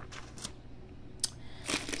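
Faint handling noise: a few soft clicks and rustles as packaging is moved about and set aside.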